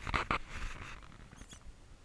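Knocks and rustling as a camera carried low along a dirt path moves and bumps, dying away to a faint outdoor background about half a second in.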